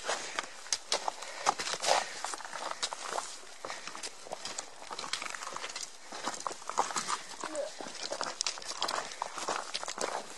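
Footsteps crunching on a rocky dirt trail with trekking poles tapping the stones, an irregular run of crunches and sharp clicks.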